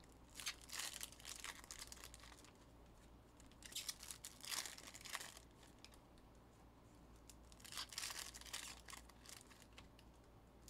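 Trading cards and their packaging being handled on a table: faint rustling and crinkling in three short spells.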